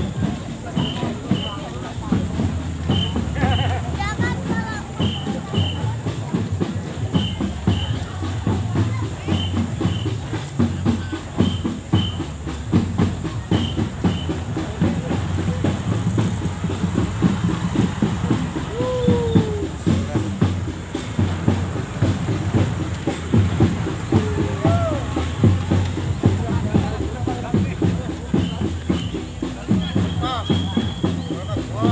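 A marching drum band's drums beating a dense, steady rhythm over the chatter of a walking crowd. Pairs of short high beeps repeat about every second and a half through the first half.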